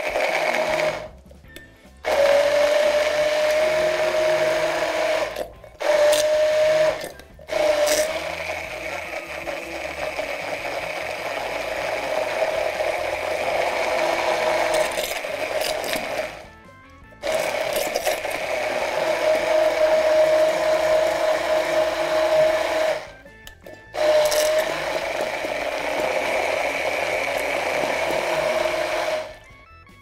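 Handheld immersion blender running in a tall plastic beaker, puréeing a liquid carrot sauce until creamy: a steady motor whine that cuts out briefly and restarts about five times.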